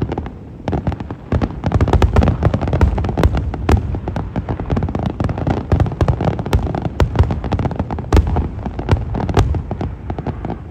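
Aerial fireworks display: a rapid, continuous barrage of shell bursts and crackle. It is a little thinner for the first second or so, then dense with overlapping bangs.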